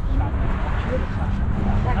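Chatter of people standing close together over a low rumble, with a steady low hum coming in about half a second in.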